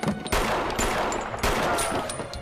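Gunshots in a film shootout: two loud shots about a second apart, each with a long echoing tail, and smaller sharp cracks in between.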